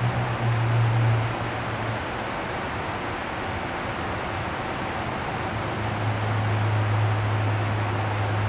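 Steady rushing noise of a ventilation blower with a low hum underneath. The hum drops away for a few seconds in the middle and then comes back.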